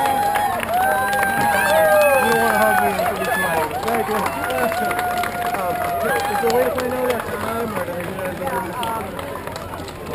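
Spectators shouting and cheering runners on at a finish line: long held calls over crowd chatter.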